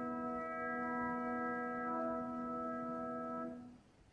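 Quiet sustained instrumental note or chord from the accompaniment, held steady without vibrato and dying away about three and a half seconds in.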